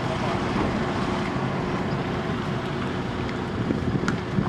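Steady engine and road noise heard from inside a moving car, with a faint constant hum.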